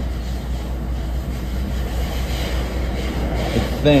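Steady rumble of a moving NJ Transit commuter train, heard from inside the passenger car.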